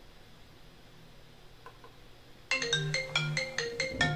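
Faint room tone, then about two and a half seconds in a quick melody of short, bright pitched notes starts up and runs on.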